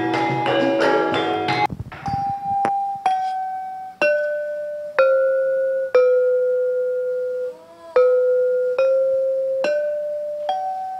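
A Javanese gamelan ensemble playing together breaks off about two seconds in. Then a single gamelan metallophone is struck note by note with a wooden mallet, about one ringing note a second, stepping down in pitch and back up, with one note left ringing longer and damped before the next.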